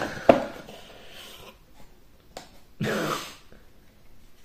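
Cardboard packaging being handled as a large LED grow-light bulb is pulled out of its box: a sharp click, light rustling and another click, then a short, louder breathy rush near the end.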